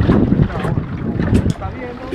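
Wind buffeting the microphone on a small boat on choppy open sea, a steady low rush mixed with water noise.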